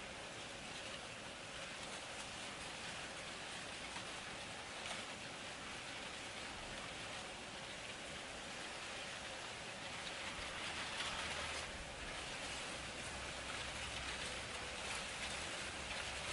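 Faint steady hiss of outdoor background noise with no distinct events. A faint low rumble joins about ten seconds in.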